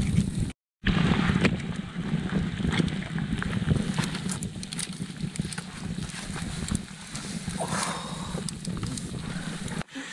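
Campfire crackling with irregular sharp pops and snaps under a rough low rumble, briefly cut off about half a second in.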